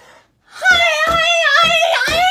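A person holds one long, high-pitched vocal note while punching a free-standing punching ball with boxing gloves. Several dull thumps of the hits land under the note.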